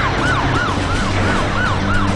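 Police car siren in a fast yelp, its pitch rising and falling about three times a second over a steady low hum.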